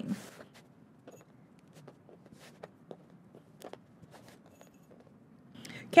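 Faint handling noise: a few light clicks and soft rustles as knit fabric is smoothed and pinned on a cutting mat.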